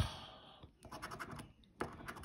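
A coin scraping the coating off a paper scratch-off lottery ticket. A loud stroke at the start fades out, and after a quieter stretch quick repeated scratching strokes start again near the end.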